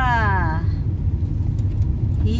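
Steady low rumble of a car's road and engine noise heard from inside the cabin. A voice slides down in pitch briefly at the start.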